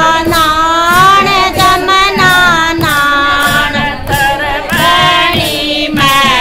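Group of women singing a Haryanvi devotional bhajan together in unison, with hand claps keeping time about twice a second.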